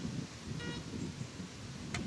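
Low wind rumble across an open field, with a short, faint electronic beep a little over half a second in, typical of a metal detector's target tone. A sharp click comes near the end.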